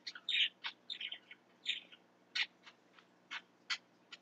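A bird chirping: about a dozen short, faint calls, irregularly spaced.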